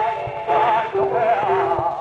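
A male flamenco singer singing fandangos de Huelva in a wavering, ornamented line, with piano accompaniment holding lower notes, played from an early shellac 78 rpm record with a muffled, narrow sound.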